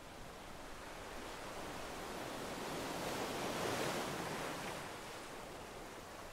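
Sea waves washing in: a soft, even rush of surf that swells to a peak about two-thirds of the way through, then eases back.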